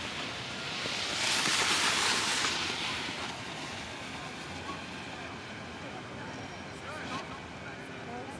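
Snowboard sliding over packed snow, a hissing scrape that swells loudly for about two seconds soon after the start, then settles into a fainter steady hiss.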